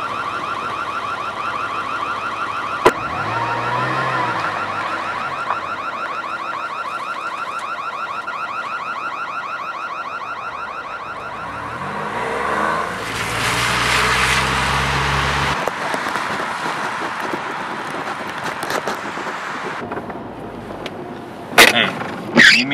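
An electronic alarm warbling rapidly and steadily, with a sharp click about three seconds in; the alarm fades away by about twelve seconds in. Then a car passes with its tyres hissing on a wet road for about three seconds.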